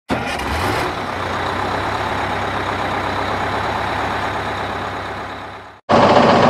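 An engine idling steadily, with a noisy hiss over a low hum; it fades out just before the end and cuts to silence.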